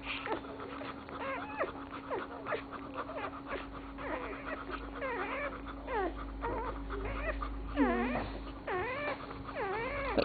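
Newborn Dalmatian puppies squeaking and whimpering while they nurse: a string of short, high squeaks that rise and fall in pitch, one after another, over a steady hum.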